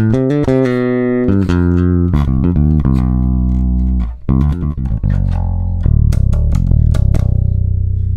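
Bass guitar playing a D minor pentatonic line with the added Dorian sixth. A run of single plucked notes comes first, then after a short break just past the halfway point a lower line of notes that carries on to the end.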